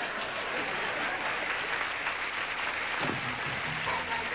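Studio audience laughing and applauding. Music starts up near the end.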